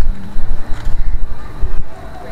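Loud, uneven low rumble of wind buffeting and handling noise on a handheld camera's microphone while walking.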